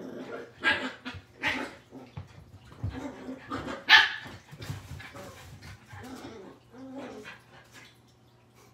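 Small terrier dogs barking in several short, sharp barks, the loudest about four seconds in, as they play.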